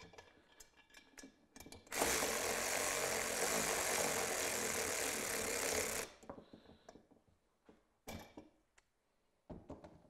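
Cordless power tool running steadily for about four seconds as it tightens the mount bolts onto an oil cooler, then stopping. A few small metallic clicks of parts being handled follow.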